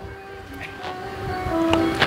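Held tones at several steady pitches, growing louder, with a stronger low tone joining near the end.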